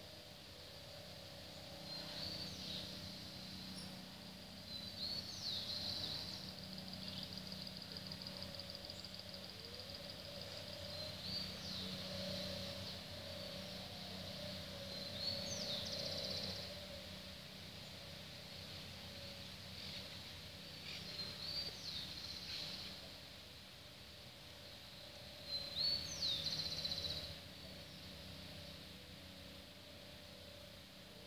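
Birds calling in short high phrases every few seconds, with a longer rapid trill about seven seconds in, over a steady low hum.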